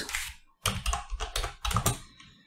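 Computer keyboard typing: a quick run of keystrokes in two short bursts as a word is typed.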